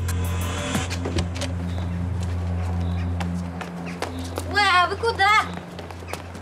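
Low, steady background music drone for about the first four seconds. Then a high-pitched voice calls out twice, each call about half a second long and wavering in pitch.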